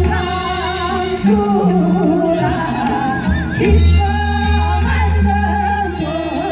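A woman singing with a wide, wavering vibrato over an amplified accompaniment with a steady, heavy bass, played through a stage PA.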